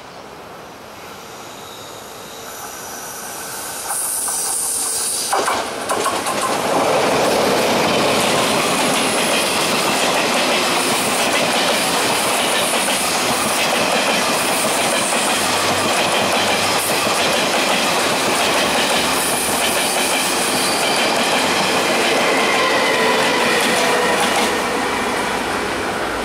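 A Taiwan Railways E1000 push-pull Tze-Chiang express running past close by on the platform track. The sound builds about four seconds in and turns into a steady loud clatter of wheels over rail joints, with brief high wheel squeals at times. It eases off near the end as the rear power car goes by.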